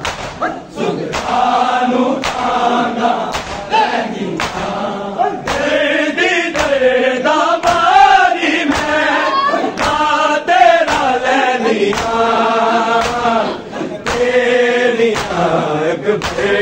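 Men's voices chanting a Punjabi noha (Shia mourning lament) together, led by a group of reciters. Sharp hand slaps of chest-beating (matam) strike again and again through the chant.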